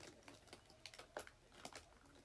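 Faint, irregular light clicks and taps, about a dozen, with the loudest a little past the middle, like small things being handled or tapped by hand.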